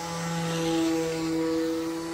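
Electric motor and propeller of a 1:8 scale Spad VII radio-controlled aircombat model, on a 6S battery, making a steady droning whine as it flies overhead. The sound swells to its loudest about a second in and then eases slightly.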